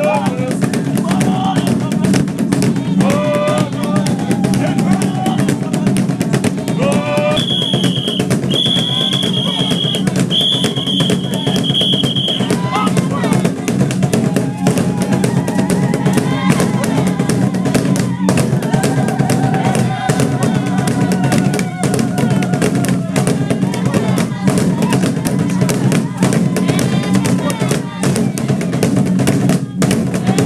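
Zulu hide-covered drums beaten in a fast, steady rhythm, with voices calling and chanting over them. A high shrill tone is held in three long stretches from about eight to twelve seconds in.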